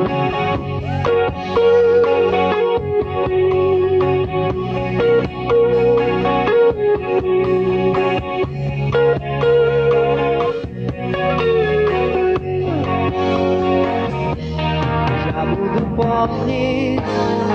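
Instrumental break of a rock ballad: an electric guitar with effects plays a lead melody of held, bending notes over bass guitar and drums.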